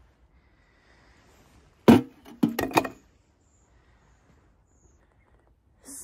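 Ice being broken at a frozen galvanised water trough: one sharp crack about two seconds in, then a quick clatter of three smaller knocks.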